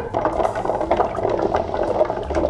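Ice cubes clinking and rattling against the walls of a glass mixing glass, a quick run of small clicks.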